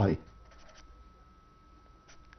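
Marker pen writing on paper: faint scratching strokes.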